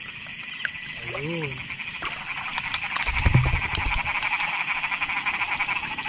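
A night chorus of many frogs calling together, a dense fast pulsing that grows louder over the few seconds.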